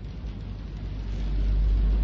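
A low, deep rumble that swells steadily louder over about two seconds.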